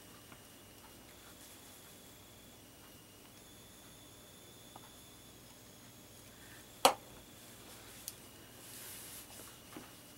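Quiet room tone with small handling sounds: one sharp click about seven seconds in, a smaller tick a second later, and a faint rustle near the end.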